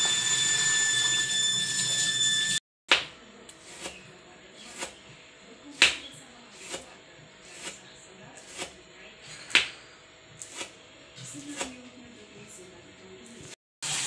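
Kitchen knife slicing turmeric leaves on a plastic cutting board: sharp taps of the blade striking the board about once a second. For the first two and a half seconds there is a steady hiss with a faint high whine.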